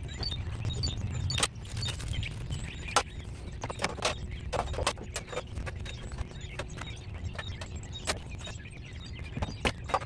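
Scattered clicks and knocks from an RV door window frame and its tempered glass being handled and fitted, over a low rumble.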